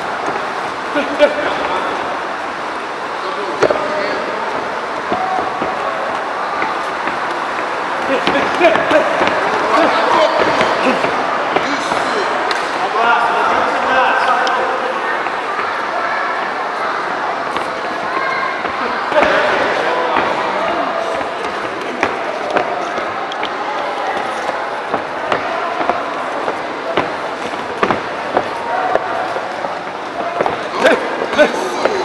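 Spectators and corner men in a sports hall talking and shouting, with scattered sharp thuds of gloved punches landing during an amateur boxing bout.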